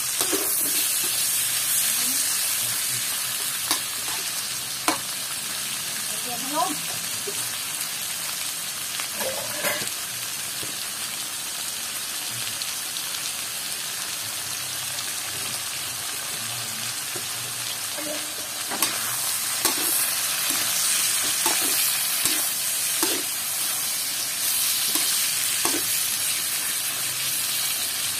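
Pork belly pieces sizzling as they fry in an aluminium wok, with a metal spatula scraping and clicking against the pan now and then. The sizzle gets louder about two-thirds of the way through.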